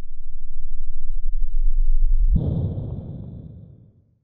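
Logo-intro sound effect: a low rumble swells, then about two and a half seconds in a fuller whooshing hit with a faint high ring sounds and dies away toward the end.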